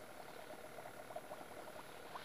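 Spinning reel cranked to retrieve fishing line: a faint steady whir with light, rapid ticking from the reel.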